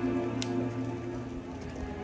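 Live orchestra holding soft sustained chords that fade down to a hush, with a faint click about half a second in.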